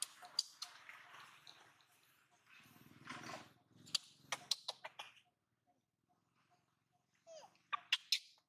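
Baby macaque squeaking: a quick run of short, sharp, high squeaks about halfway through, and a longer squeal that bends in pitch near the end. These are the protest calls of a baby being weaned.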